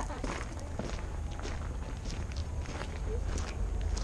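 Footsteps crunching on a gravel path, an irregular run of short scuffs as people walk, over a steady low rumble.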